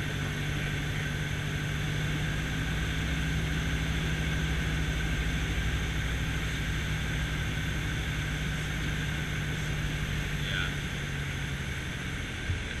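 Light single-engine airplane's engine and propeller droning steadily, heard from inside the cabin on approach to land. A strong low steady tone in the drone fades out shortly before the end.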